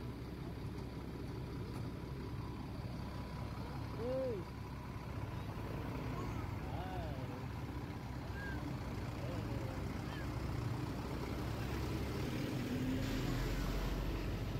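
Diesel engine of a large coach bus running at low speed as it creeps past at close range, a steady low rumble. A few short voices are heard over it, one clearly about four seconds in.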